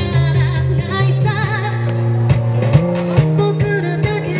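A woman singing an upbeat J-pop song live into a microphone, over backing music with a steady beat and bass.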